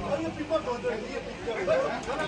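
Indistinct chatter: several people talking at once, with overlapping voices.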